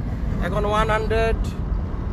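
Steady low road and wind rumble inside a car's cabin at about 100 km/h, the car coasting in neutral with the engine only idling.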